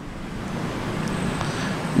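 A rushing background noise that slowly grows louder, with a faint high whistle over it.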